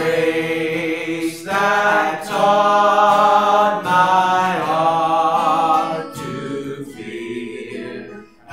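A man singing a slow hymn in long, held phrases, accompanying himself on acoustic guitar.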